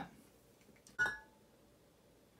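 A single light clink of glass about a second in, ringing briefly: a glass whisky bottle knocking against the bottles around it as it is lifted out of a crowded row.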